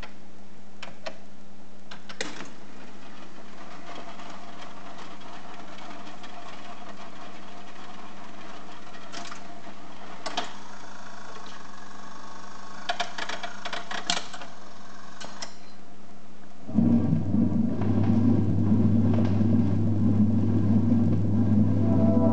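Rock-Ola Max 477 jukebox mechanism running after a selection: a steady hum with a series of clicks and short rattles as the record changer takes a 45 from the magazine and sets it on the turntable. About 17 seconds in, the record starts playing, louder and bass-heavy.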